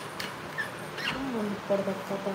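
A person's voice, indistinct and wordless to the recogniser, starting a little over a second in, after a couple of faint clicks.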